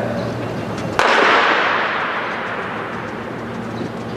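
A single starting-gun shot about a second in, with a long echo fading across the stadium: the start signal for a wheelchair 100 m sprint.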